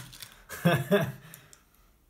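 A man's voice saying a short phrase, followed by a few faint light clicks.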